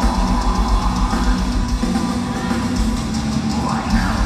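Melodic death metal band playing live: a loud, steady drum kit beat with bass drum under distorted guitars, heard from the audience.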